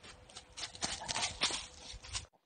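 Young Newfoundland dog running over dry fallen leaves, its paws crunching and scuffing the leaves in quick strides that get louder as it comes up close. The dog is running freely, no longer lame from panosteitis.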